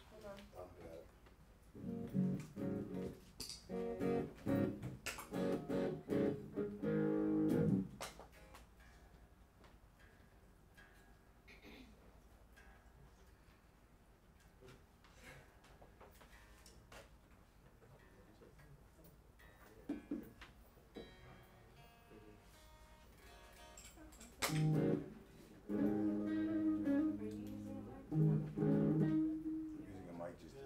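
Electric guitar through an amplifier played in two short runs of plucked notes, about two to eight seconds in and again near the end, with a quiet stretch between while the tuning pegs are turned: the guitar being tuned and sound-checked.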